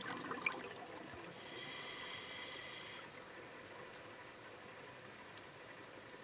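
Scuba regulator breathing heard underwater: a burst of exhaled bubbles in the first second, then a hissing, whistling inhalation from about a second and a half to three seconds in.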